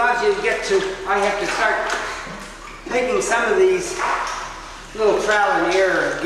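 A man's voice in four short phrases, each about a second long, with no clear words.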